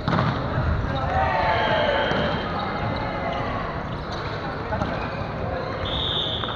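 Players' voices calling and chatting across a sports hall, with thuds on the wooden court floor.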